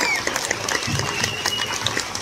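Audience applauding and cheering at the end of a live band's song, with scattered voices.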